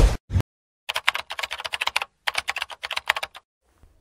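Computer keyboard keys clicking in rapid typing, in two or three short runs of clatter with brief pauses between.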